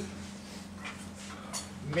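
Chalk writing on a blackboard, a few short faint strokes, over a steady low hum.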